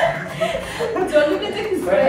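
A few people chuckling and talking.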